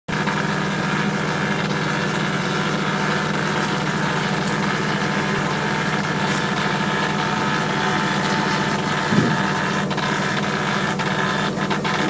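An engine or motor running steadily at idle, a constant low hum. A brief sliding tone rises and falls about nine seconds in.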